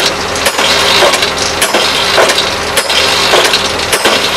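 Drill rig's automatic hammer striking at a steady pace of about one blow a second over the running rig engine, driving a sampler into the ground.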